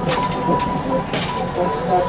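Chicago and North Western bi-level passenger coaches rolling slowly past, with sharp clicks from the wheels and rails over a steady running noise.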